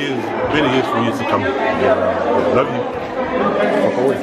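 Several people talking at once, voices overlapping.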